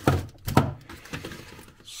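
A dull knock about half a second in as items in a refrigerator are handled, with a softer click just before and faint handling noise after.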